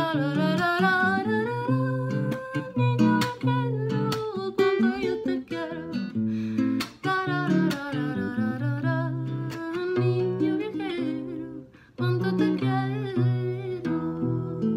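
A woman singing over her own fingerpicked classical guitar, her voice gliding from note to note, with a brief pause in both voice and guitar shortly before the end.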